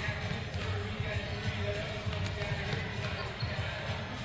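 Volleyballs being passed and hit during warm-up: irregular thuds of balls off players' arms and bouncing on a hardwood gym floor, several at a time.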